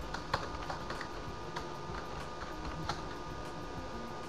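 Typing on a computer keyboard: irregular separate key clicks, most of them in the first second, over a steady background hum.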